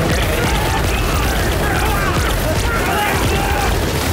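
Produced science-fiction battle sound effects: a continuous low rumble with booms and sharp strikes, indistinct shouting voices, and a music score underneath.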